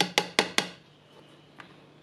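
A metal teaspoon tapping against the plastic bowl of a small food chopper as a spoonful of seasoning powder is emptied into it: four quick, sharp taps, about five a second, then one faint tick near the end.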